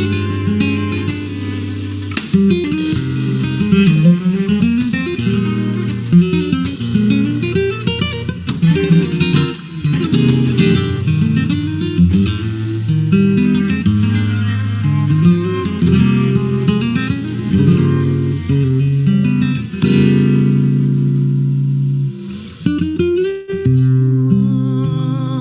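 Instrumental music: a flamenco-style acoustic guitar plays a busy plucked line over a cello holding long low notes.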